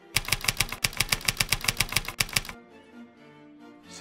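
Typewriter keys clacking in a fast, even run of about twenty strokes that stops suddenly about two and a half seconds in, over soft background music.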